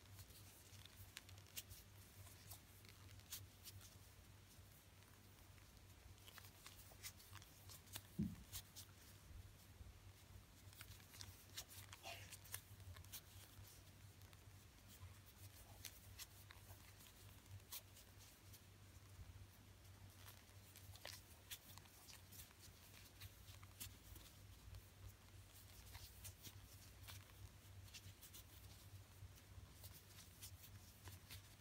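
Faint rustling and soft clicks of a plastic crochet hook pulling loops of T-shirt yarn through single crochet stitches, over a steady low hum. A single brief low thud about eight seconds in is the loudest moment.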